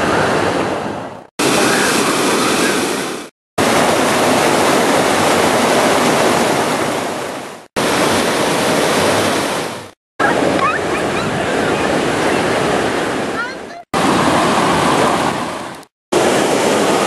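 Loud, steady rush of water pouring over the stone cascades and waterfall of an urban stream. It comes in a series of short clips, each fading out into a brief silent gap every two to four seconds.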